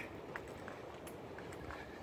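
Faint outdoor background with a few soft ticks scattered through it.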